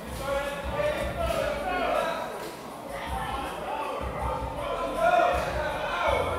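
Indistinct voices in a large room over music with a repeating bass beat.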